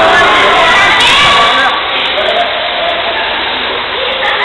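Many children shouting and calling out at once while playing in a swimming pool, their voices overlapping, loudest in the first two seconds.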